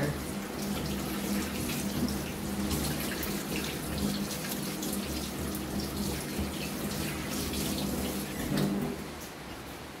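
Tap water running from a faucet into a stainless steel sink, splashing over hands rubbed together as they are rinsed.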